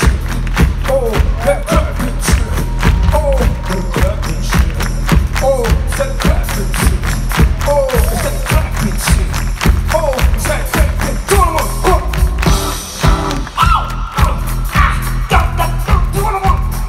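A live band playing loud drums, electric guitar and keyboards, recorded from within the audience. A short falling figure repeats about once a second over a steady drum beat, and the playing changes about three quarters of the way through.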